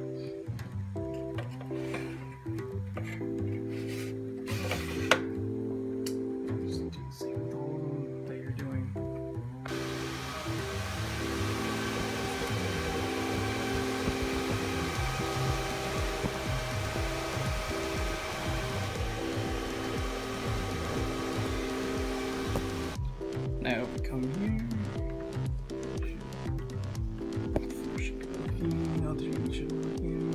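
Background music runs throughout. From about a third of the way in until about three quarters through, the steady rush of Antminer S7 cooling fans running lies under the music and then cuts off sharply.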